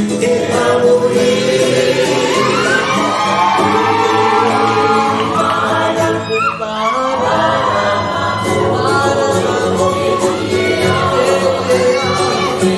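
Polynesian song sung by several voices together, the melody gliding between notes, continuing without a break.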